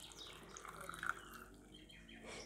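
Salt brine poured in a thin stream from a plastic measuring jug into a glass jar packed with halved radishes: a faint, steady trickle of liquid filling the jar.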